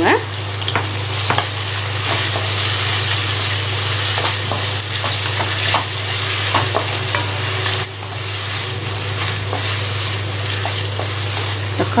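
Shallots, tomato, green chillies and curry leaves sizzling in hot oil in a non-stick kadai while being stirred with a wooden spatula, with light scrapes and taps of the spatula against the pan. A steady low hum runs underneath.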